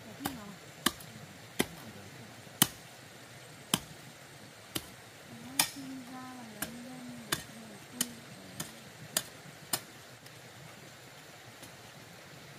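A hand hoe chopping into stony garden soil: a sharp strike about every second, about a dozen in all, stopping near the end.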